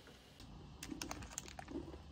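Plastic snack wrapper crinkling in the hands around a bran biscuit, a quick run of irregular sharp crackles starting about half a second in.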